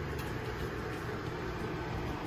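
Steady low hum and hiss of room background noise, with no distinct event.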